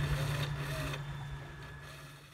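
Torqeedo electric outboard motor running with a steady low hum, fading away through the second half.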